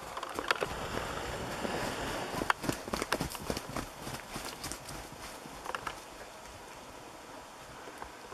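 Hoofbeats of Jersey cows trotting and galloping over snow-covered ground: an irregular scatter of thuds, busiest and loudest in the first three or four seconds, thinning out as the cows move away.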